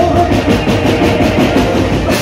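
Loud live band music for a Gujarati dandiya folk dance, heard through the stage sound system: a dense drum rhythm and deep bass with little clear melody, apart from a short held note at the start.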